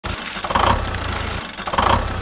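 A tractor engine running with a steady low throb, with two brief louder bursts, about half a second in and near the end.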